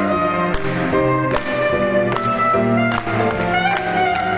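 Clarinet and piano playing an instrumental passage, with regularly struck piano notes under the clarinet line.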